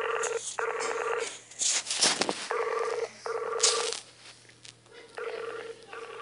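Skype's outgoing call tone playing from a phone's speaker while the call goes unanswered: a pulsing tone in pairs of short beeps, repeating about every two and a half seconds. A few brief handling clicks about two seconds in.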